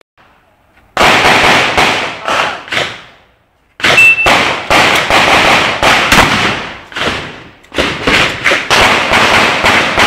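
Akkar competition semi-automatic shotgun firing rapid strings of shots, several a second, beginning about a second in, with a short pause about three seconds in before the firing resumes.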